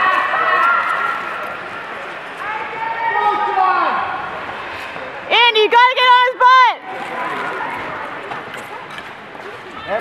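Voices shouting encouragement from the rink, with a loud run of about five quick, high-pitched shouts a little past the middle, over a steady wash of arena noise.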